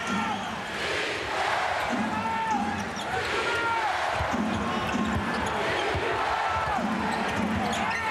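Basketball being dribbled on a hardwood court over steady arena crowd noise, with short squeaks of sneakers on the floor.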